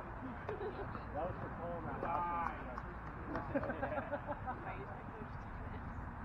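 Softball players shouting and calling out excitedly during a live play, in bursts about a second and a half in and again past the three-second mark, over a steady low background rumble. A single sharp knock comes right at the start.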